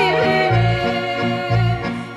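A woman singing a Macedonian folk song, backed by a folk band with accordion and guitar. Long held notes with vibrato run over a bass beat that comes about once a second.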